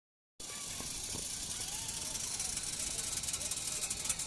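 A steady, airy hiss starting a moment in, with faint distant voices now and then.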